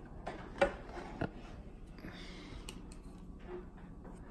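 Light taps and clicks of trading cards being handled and set down on a tabletop, with a brief papery rustle about two seconds in.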